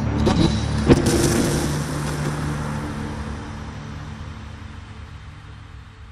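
The closing tail of a phonk track: a steady low drone left after the beat stops, with a sharp click about a second in, fading out slowly over the whole stretch.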